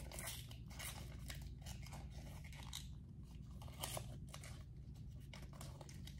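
Faint handling noise of a bronzer stick's packaging: irregular rustling, scraping and small clicks as the product and its box are turned over and opened.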